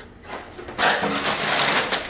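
Plastic noodle bag crinkling and rustling in the hands as it is opened, starting loudly about a second in.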